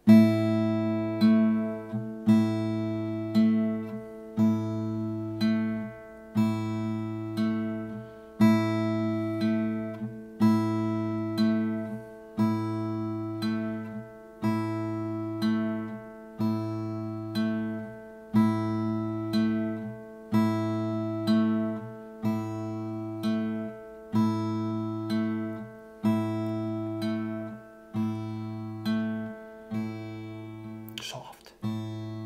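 Steel-string acoustic guitar fingerpicked over an A minor chord: the thumb on the open A string and a finger on the open high E pluck together in a pinch about once a second. Single notes are repeated on the G string in between, in a slow, even beginner's pattern.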